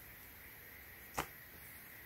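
Faint steady hiss with a single short tap about a second in, from hands laying the boxer briefs down and handling them.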